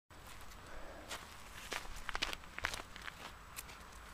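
Footsteps on frosted grass close to the microphone: an irregular run of short steps, thickest in the middle.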